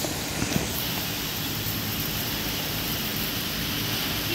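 Steady rushing outdoor noise with two faint sharp clicks about half a second in.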